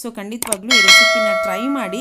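A bell-chime sound effect from a subscribe-and-notification-bell animation, struck once about 0.7 s in and ringing out for about a second and a half over a woman's voice.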